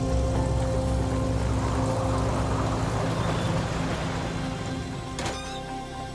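Twin-engine propeller plane's engines running as it lands and rolls along, under a dramatic music score; the drone eases off in the last couple of seconds. A single sharp knock near the end.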